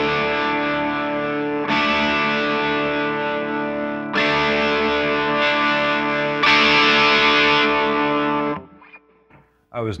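Gibson electric guitar played through a Psionic Audio Telos overdrive pedal and amp: distorted chords struck about every two and a half seconds and left to ring, the last one brighter, then cut off about a second before the end.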